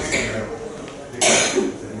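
A person coughs once, short and loud, a little over a second in, over faint talk.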